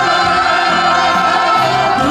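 A woman singing a Korean trot song live into a microphone, holding one long wavering note over a small band's keyboard chords and a bass line that changes note a few times.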